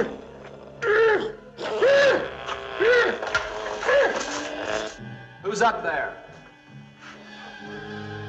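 A man's strained groans, a series of rising-then-falling cries about once a second with a last one after a short gap, as he struggles against chains. A low, held music score plays underneath.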